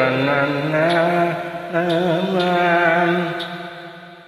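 A man singing a wordless Carnatic phrase in raga Kalyani: wavering ornamented notes (gamakas) in the first second, then long held notes that fade away near the end.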